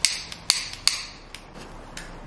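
Handheld gas-stove lighter being clicked about five times in quick succession: sharp plastic clicks of its igniter trigger.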